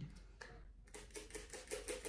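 Hand-held plastic spray bottle misting a strand of hair, a quick run of short faint squirts, about six a second, in the second half.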